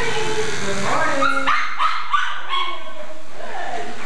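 Small dogs barking, a quick run of short, high-pitched barks between about one and three seconds in.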